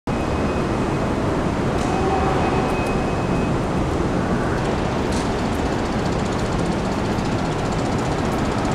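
Steady city traffic noise, a constant rumble and hiss without a break. A faint high whine stops about three and a half seconds in, and a few faint ticks come through.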